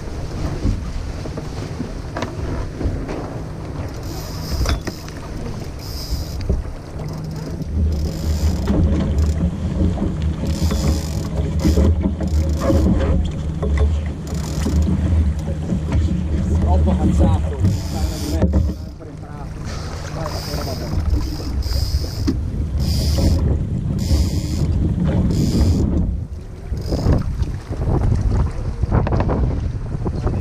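Wind buffeting the microphone on the deck of a sailboat under way, heaviest in the middle stretch, with water rushing along the hull in repeated short surges.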